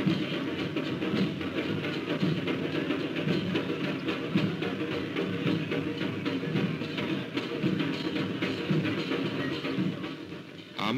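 Hosay festival drumming, tassa drums beating a continuous rhythm, heard on an old film soundtrack.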